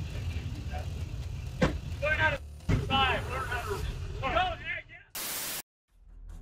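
Raised voices of people arguing, over a low rumble. Near the end a half-second burst of static-like hiss cuts in, then the sound drops out.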